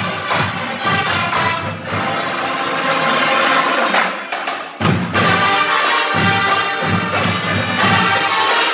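A marching band playing live: horns carry the tune over the drums. The drums drop back for a couple of seconds in the middle and come back in hard just before the halfway point of the second half, about five seconds in.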